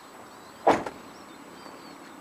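One short, loud thump about two-thirds of a second in, against faint bird chirps.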